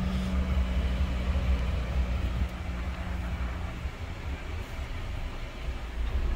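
2012 Jeep Wrangler's 3.6-litre V6 idling, heard inside the cabin as a steady low hum. A fainter higher drone fades out about two-thirds of the way through, and there is a single light click at the very start.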